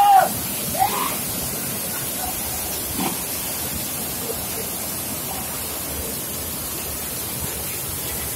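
Water from a chute pouring onto the blades of a turning elliptical-core impulse turbine and splashing off into the stream, a steady rushing splash.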